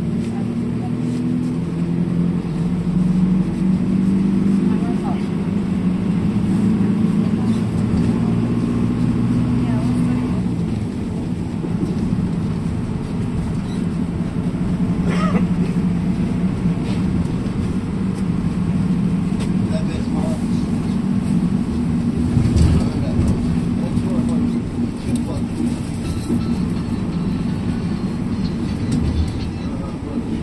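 Engine drone and road noise from inside a moving vehicle: a steady low hum whose pitch shifts as the speed changes. There are a few short knocks, the loudest about two-thirds of the way in.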